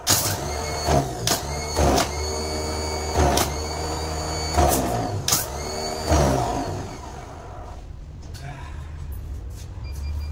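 Repaired truck starter motor bench-tested on a direct battery connection: the motor spins with a high whine while the jumper clamp is touched to its terminal, crackling with sparks about eight times. It winds down and goes quieter after about seven seconds.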